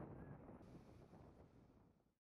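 Near silence: a faint low background hiss that fades away to nothing.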